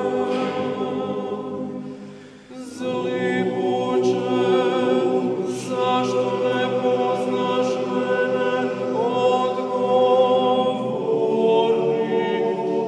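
Male choir singing slow, sustained chords. One phrase fades out about two seconds in, and the voices come back in together with a new phrase a moment later.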